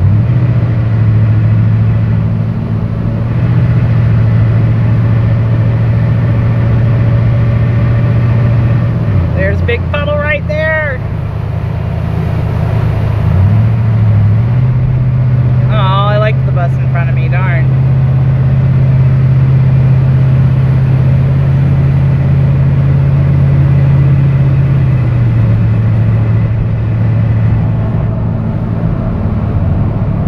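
Ford Bronco heard from inside the cabin while driving on a wet, flooded highway: a low, steady engine and road hum over the hiss of tyres on the wet road. The hum drops in pitch about nine seconds in, rises about fourteen seconds in, and settles lower again about twenty-five seconds in.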